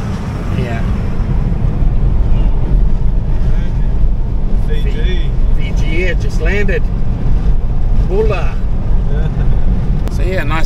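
Steady low wind and road rumble from a car moving at speed with a window open. Faint voices talk in the second half.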